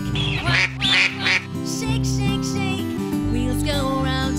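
A duck quacking three times in quick succession, between half a second and a second and a half in, over instrumental backing music.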